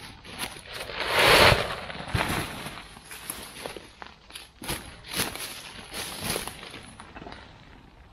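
A nylon pop-up throw tent springing open with a loud rush of fabric about a second in. This is followed by rustling of dry leaves on the forest floor and scattered clicks and crackles as the tent is handled and set down.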